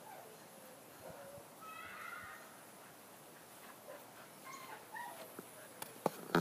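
A dog whining faintly in short high whimpers, once about two seconds in and again briefly near the end.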